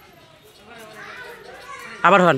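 Faint background voices chattering, growing a little louder about half a second in.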